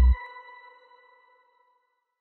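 The last note of electronic outro music: the bass cuts off just after the start and a high synth tone rings on, fading away over about a second and a half.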